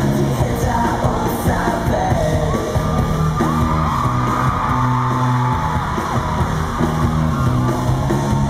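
Live rock band playing loudly: electric guitar and bass guitar with sustained low bass notes and a gliding higher line, with a voice singing over it.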